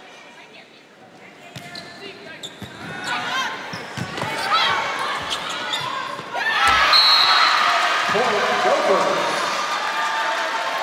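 Volleyball rally in an arena: the ball is struck several times and shoes squeak on the court while crowd noise builds. A hard hit comes about two-thirds of the way in, and the crowd breaks into loud cheering, with a short high whistle just after.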